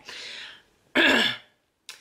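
A woman clears her throat once, a short loud burst about a second in, followed by a small click near the end.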